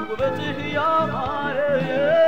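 Ethiopian gospel song in Amharic: a solo voice singing a gliding, ornamented melody over instrumental accompaniment.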